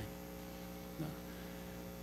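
Steady electrical hum from the microphone and sound system in a pause between words, with one brief vocal sound about a second in.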